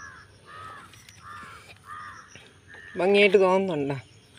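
A crow cawing, about five short caws in a row, each about half a second apart. A person's voice cuts in near the end and is the loudest sound.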